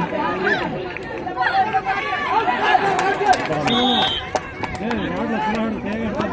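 Crowd of spectators chattering, many voices talking and calling out at once, with a short high whistle about four seconds in.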